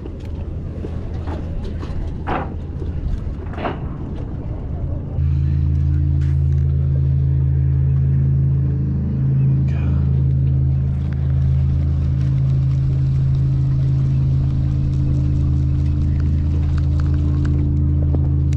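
A steady low mechanical hum, like a running motor, cuts in suddenly about five seconds in and holds at one pitch. Before it there is a low rumbling noise with a few sharp clicks.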